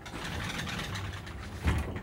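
Sliding glass door rolling along its track, ending in a knock as it comes shut near the end.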